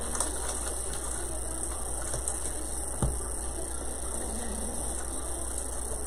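Faint rustling and clicking as an artificial pine-and-leaf arrangement is handled and an ornament ball is pushed into it, with one light knock about three seconds in.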